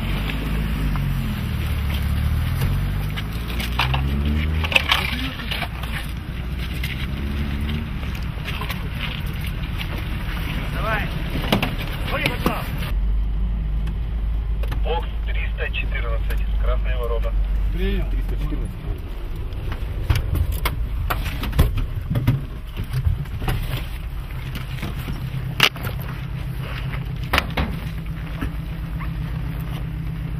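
A vehicle engine running, heard as a steady low drone, with indistinct voices and scattered knocks over it.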